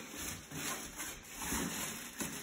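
Faint rustling and handling noise of a plastic liner bag being unhooked from the rim of a plastic pail, with a few soft bumps.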